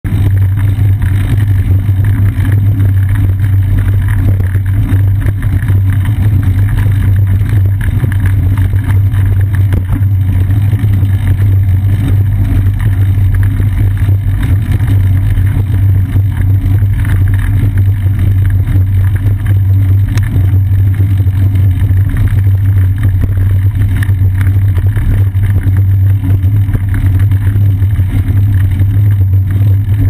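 Loud, steady low rumble of wind and riding vibration picked up by a bicycle-seat-mounted GoPro Hero 2 action camera while the bike rolls along at speed, with no let-up.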